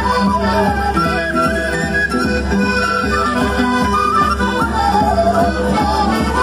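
Andean traditional music played for the Qhapaq Negro dance: a melody over a steady low drum beat.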